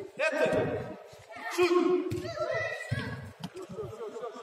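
Shouting voices from players and spectators at an indoor football match: several short, excited yells and calls, one after another, in a large hall.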